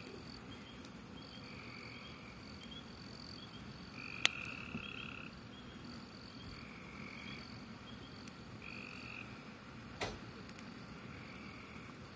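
Frogs calling in repeated trills about a second long, every second or two, over a steady high-pitched drone. A wood fire pops sharply twice, about four seconds in and again near ten seconds.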